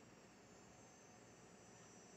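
Near silence: faint room tone and hiss.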